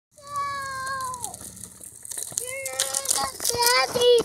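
A young child's long high-pitched call that falls away at its end, then shorter rising calls, over clicking and rattling from a balance bike rolling along the path.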